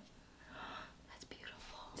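Faint whispered, breathy voice with a few soft clicks.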